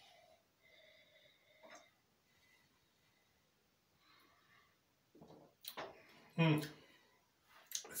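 A man drinking from a glass: faint for the first few seconds, then a few short exhales and wordless voiced sounds from him, starting about five seconds in.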